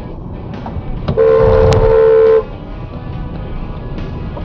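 Car horn sounding once in a steady blast of just over a second, about a second in, over background music.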